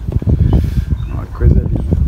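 Strong wind blowing across the microphone in gusts, a heavy low buffeting rumble. A voice is heard briefly about one and a half seconds in.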